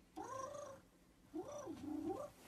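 Two faint meow-like calls. The first arches up and down in pitch; the second, about a second later, dips and rises again.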